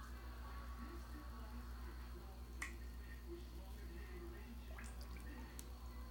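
Homemade bath bomb fizzing faintly in water, with a few sharp clicks, the loudest about two and a half seconds in, over a steady low hum.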